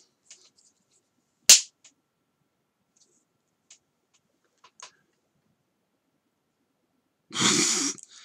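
Small handling sounds at a drawing desk: one sharp click about a second and a half in, then a few faint ticks. Near the end comes a short, noisy burst of breath.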